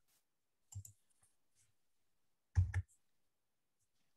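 Two clicks of a computer mouse advancing a presentation slide: a faint one about a second in, and a louder one past halfway.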